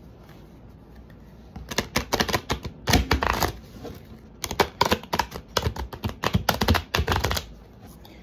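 A deck of Rider-Waite tarot cards being shuffled by hand: a fast run of card clicks starting a couple of seconds in, a brief pause, then a second longer run of shuffling.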